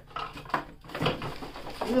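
Plastic electronics and cables rattling and knocking as they are rummaged out of a cardboard box, with a few sharp clicks.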